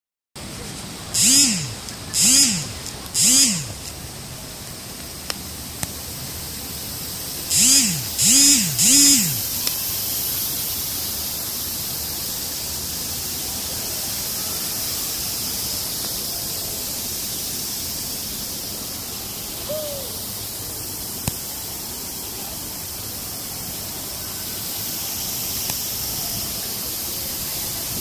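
Dry-mist nozzles spraying with a steady hiss that thickens into a continuous wash of spray noise. Near the start, two groups of three short tones, each rising and then falling in pitch, sound over the spray.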